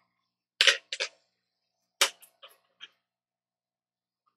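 Sharp clicks and taps of metal tweezers being handled and set down on a workbench: two louder clicks about a second and a half apart, each followed by a few fainter ticks.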